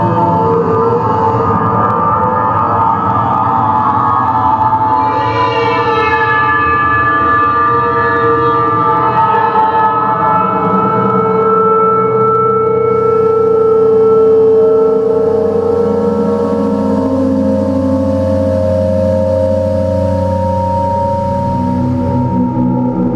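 Electroacoustic drone music from live electronics: UPIC-system graphic synthesis combined with analog synthesizer sounds, many sustained electronic tones layered into a dense steady mass. About five seconds in, a cluster of higher tones enters and slowly glides downward, and long held tones carry on to the end.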